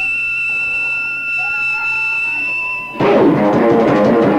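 Live rock band: high, steady electric guitar feedback tones held for about three seconds, with one tone sliding up and holding, then the drums and distorted guitars crash in loudly and play on.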